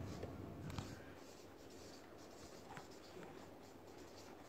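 Marker pen writing on a paper flipchart pad in short, faint scratching strokes, with a single click a little under a second in.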